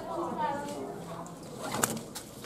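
Nylon ratchet-strap webbing being fed through a metal ratchet buckle and pulled through, with a short rasping scrape near the end.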